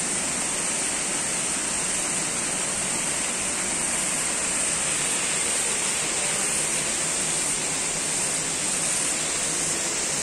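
Steady, unbroken rush of running water, even throughout with no changes.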